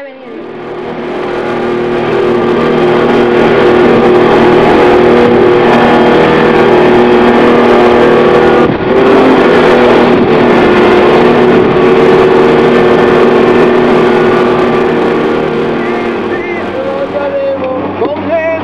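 Outboard motor of a small open boat running steadily under way at speed, with a steady rush of wind and water noise. It swells up over the first few seconds and eases slightly near the end.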